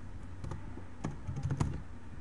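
Computer keyboard keys being typed, a handful of separate keystrokes, entering a name.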